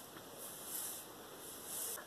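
Faint, soft rustling of hands handling thick coily hair, swelling slightly a couple of times.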